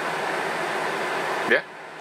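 Steady, even background hiss that cuts off suddenly about one and a half seconds in, as a voice says a short 'yeah'.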